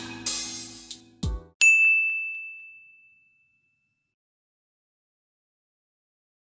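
Outro music ends with a last hit, then a single high, bell-like ding rings out about a second and a half in and fades away over about a second and a half.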